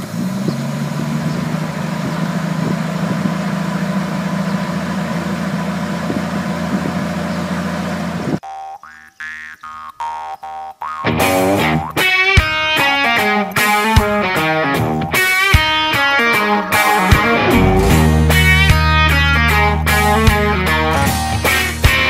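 Ford short-box pickup's engine idling steadily, cutting off abruptly about eight seconds in. A country-rock song with guitar then begins, sparse at first and filling out into the full band about eleven seconds in.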